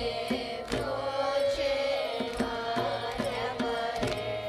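Carnatic music performed live: a group of voices singing in unison with violin, and a mridangam striking sharp drum strokes through the phrase.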